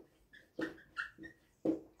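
Whiteboard marker squeaking against the board in several short strokes while writing, each squeak a brief high steady tone.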